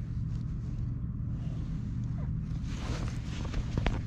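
Gloved hands rustling and handling wiring inside an HVAC gas pack's control compartment, over a steady low hum, with one sharp click just before the end.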